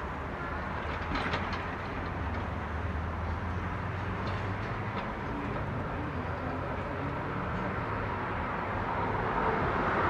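Sydney electric tram car 24s running slowly along the track, its wheels rolling on the rails with a low hum and a few faint clicks. It grows louder near the end as it comes closer.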